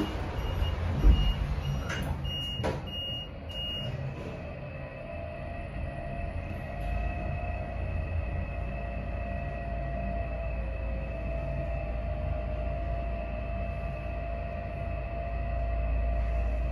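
A 1997 Otis passenger elevator: a repeating door beep and a couple of clunks as the doors close in the first few seconds, then the car travelling downward with a steady hum over a low rumble.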